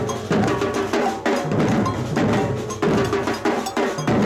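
A drum troupe playing slung marching-style drums together in a steady rhythm, struck with sticks and mallets, with short pitched ringing notes among the strokes.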